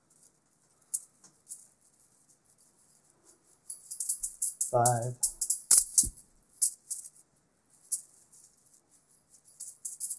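Beaded juggling balls rattling in the hands with each throw and catch. There is a few scattered clicks at first, then a quick, dense run of rattling catches from about four seconds in to about seven and a half, then a few scattered ones again, with one duller knock about six seconds in.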